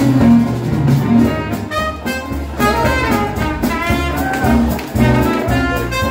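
Live Dixieland jazz band playing: trumpet, saxophone and trombone lines over piano, string bass and drums.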